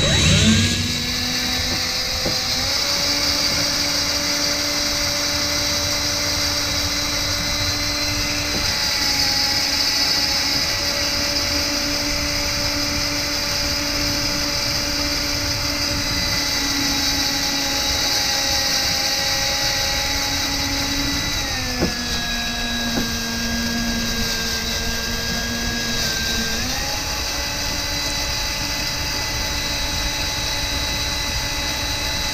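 Power drill running continuously as it bores into the steel frame of a Jeep TJ with an unlubricated high-speed-steel 1/4-20 drill-tap bit. It gives a steady motor whine, which drops lower under load about two-thirds of the way through and picks back up about five seconds later.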